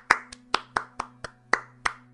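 One person clapping hands, about four sharp claps a second, spaced a little wider toward the end, over a steady low hum.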